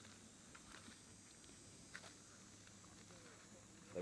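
Near silence: faint outdoor ambience, with a faint click about two seconds in.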